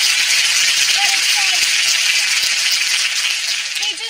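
Studio audience applauding loudly, dying away just before the end.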